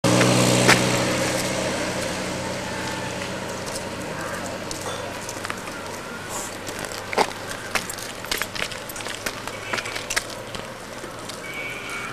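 A motor engine's hum that fades away over the first few seconds, followed by scattered faint clicks and crackles.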